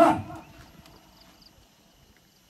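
A single loud shouted call at the very start, falling in pitch and over within half a second, followed by faint outdoor quiet.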